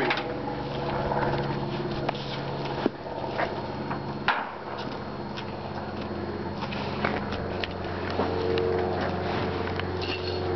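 An engine running steadily at idle, its hum dropping a little in pitch about four seconds in, with a few knocks and rustles as Christmas trees are lifted down and leaned against the truck.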